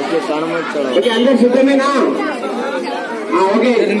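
Babble of many children's voices talking at once in a large room, with no single voice standing out.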